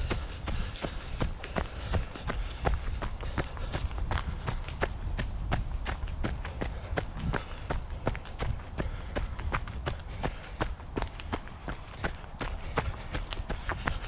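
A runner's footsteps landing on a leaf-covered dirt trail in a steady rhythm of about three strides a second, over a steady low rumble.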